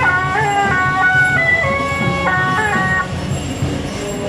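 A suona melody of held notes that step up and down with small bends at their starts, breaking off about three seconds in, over the low rumble of an idling truck engine.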